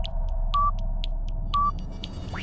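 Old film-leader countdown sound effect: two short beeps a second apart over a steady low hum and scattered crackly clicks.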